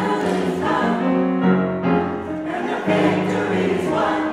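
Mixed-voice gospel choir singing in harmony, holding chords in phrases that break briefly twice.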